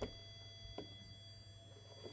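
Small speaker driven by a TLC555 timer in astable mode with a 10 nF timing capacitor, giving a faint, steady square-wave tone of about 700 Hz. A click comes at the start and another just under a second in, where the main pitch drops away and only a faint high whine stays.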